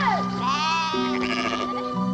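Sheep bleating several times in a row, each call arching and wavering in pitch, over background music of long held notes.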